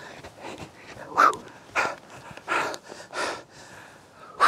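A man breathing hard, out of breath after running: a run of heavy breaths, about two-thirds of a second apart and louder from about a second in.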